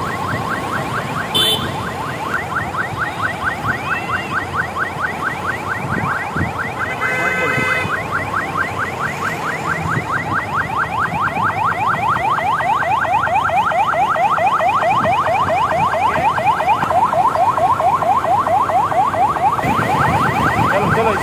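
Electronic siren in a fast yelp: a short rising tone repeating several times a second, getting louder toward the end, with a brief steady tone about seven seconds in.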